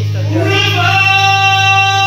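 A man singing through a microphone over a backing music track, sliding up into a long held high note about half a second in.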